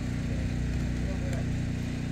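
An engine idling steadily, a low even hum with no change in speed.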